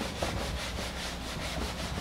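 Whiteboard being wiped clean with an eraser: a scratchy rubbing in quick back-and-forth strokes, about five a second.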